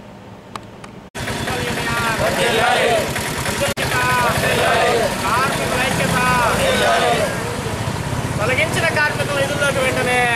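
About a second of quiet, then an abrupt cut to a vehicle engine running loudly and steadily, with people's voices rising and falling over it.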